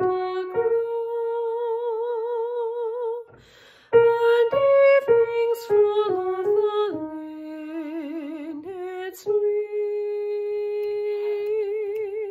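A woman sings the second voice part of a choral piece alone, with no accompaniment and vibrato on the held notes. There is a short breath break about three seconds in, then a string of shorter stepping notes, and a long held note near the end.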